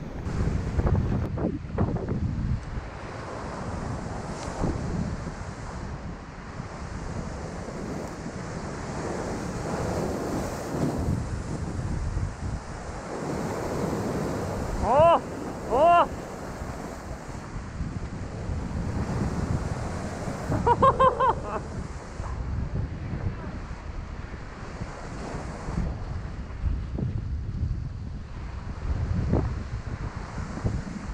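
Surf breaking and washing over a rocky shore, with wind buffeting the microphone throughout. About halfway through come two short, loud calls that rise and fall, a second apart, and a quick run of short calls follows a few seconds later.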